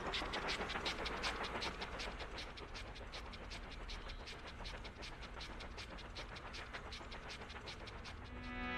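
Cartoon train sound effect: a rapid, even clatter of a train running along the track, about five beats a second, slowly fading as it moves away.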